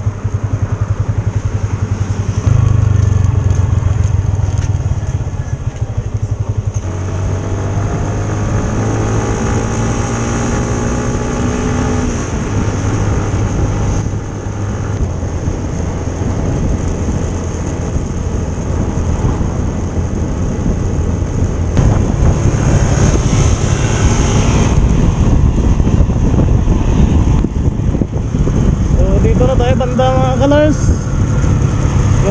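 Yamaha motor scooter's engine running under way, with wind and road noise over the microphone; its pitch climbs as it accelerates about seven to twelve seconds in.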